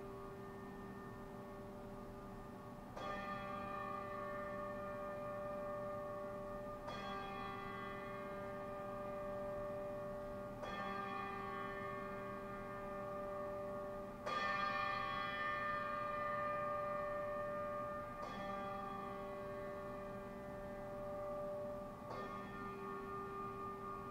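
A single bell tolled slowly, struck six times about every four seconds, each stroke ringing on into the next; the fourth stroke is the loudest.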